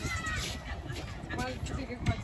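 Voices of children and adults talking at once, with a short high-pitched child's voice near the start.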